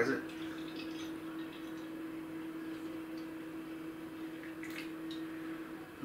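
Beer poured from a can into a glass, a quiet liquid trickle and fizz, with a few faint drips and light contacts near the end. A steady low hum sounds throughout.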